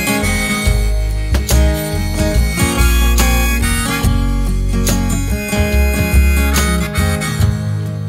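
Instrumental break of a country song: the band plays a melody line over a steady beat, with no singing.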